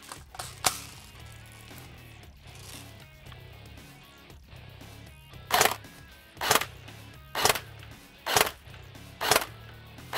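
Electric airsoft rifle (H&K G36 AEG) firing single shots, five of them a little under a second apart, starting about halfway through, over background music.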